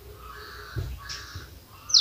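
A bird calling twice in the background, each call about half a second long and about a second apart, with a short run of high, falling chirps from another bird right at the end.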